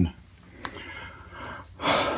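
A man's sharp breath in, loud and rushing, near the end, after a quiet pause broken by one faint click.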